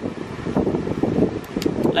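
Wind buffeting the microphone in an uneven rumble, with three or four light, sharp clicks in the second half as a revolver is handled.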